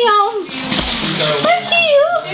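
Tissue paper rustling and crackling for about a second as a present is unwrapped, with people's voices before and after it.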